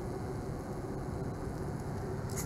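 Steady low rumble of a car heard from inside the cabin, its engine running.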